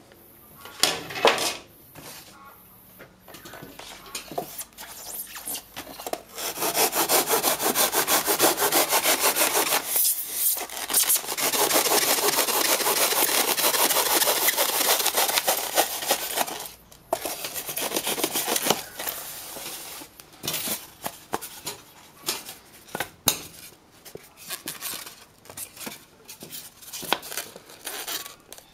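A bare hacksaw blade scraping and sawing into expanded polystyrene foam, scoring a line along the edge of a foam box. The first few seconds are quiet; then come long stretches of dense, continuous scraping, followed by shorter separate strokes near the end.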